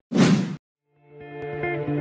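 A short whoosh sound effect for a logo transition. About a second of silence follows, then soft background music with sustained notes fades in.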